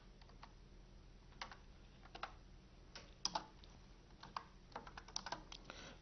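Faint, irregular keystrokes on a computer keyboard as text is typed.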